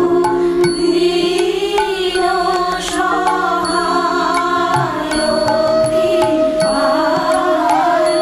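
Bengali devotional prayer song: a voice sings slow, long-held notes that bend gently in pitch, over a sustained instrumental accompaniment with light, regular percussion clicks.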